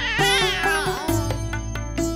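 Background score of plucked-string notes over a steady low drone. In the first second a high, wavering, voice-like glide rises and falls over the music.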